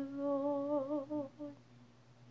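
A woman humming a slow, wavering melody. The phrase fades out about one and a half seconds in.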